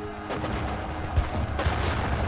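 Battle sound effects of artillery and gunfire rumbling, with one sharp bang just over a second in, over faint music.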